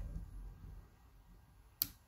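A switch clicking once, sharply, near the end, over a faint low rumble that dies away in the first second.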